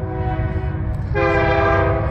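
Air horn of an approaching Union Pacific diesel locomotive: a steady multi-note chord that comes in loud about a second in and holds, over a low rumble.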